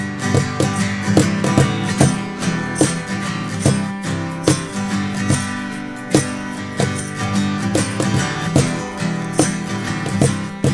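Acoustic folk band playing an instrumental passage: strummed acoustic guitars and an acoustic bass guitar over a steady percussive beat, with an egg shaker.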